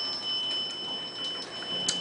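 Elevator arrival chime ringing out: a single bell-like ding of several high tones fading away over about a second and a half. A sharp click follows near the end.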